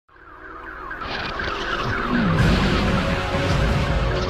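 Television news theme music fading in from silence, an electronic intro with quick repeating synth figures and a swooping sweep effect about two seconds in.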